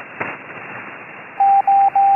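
Morse code (CW) signal received on the 20-metre band through a FlexRadio 6600 transceiver: one steady beep tone keyed on and off in long and short elements, loud, starting a little past halfway, over a constant hiss of receiver band noise.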